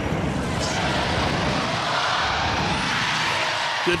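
Studio audience cheering and shouting in a steady wash of crowd noise.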